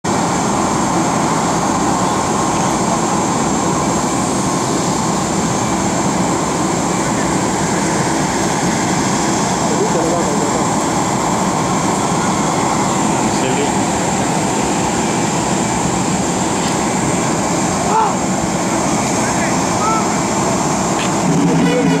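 Jet airliner's turbine running steadily at idle: a constant rush with a high, steady whine, over a faint murmur of voices.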